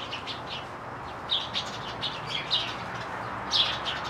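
Small birds in a tree giving short, sharp chirps, several spaced through the clip, the loudest near the end: an agitated commotion that sounds to the listener like a "bird murder" in the branches.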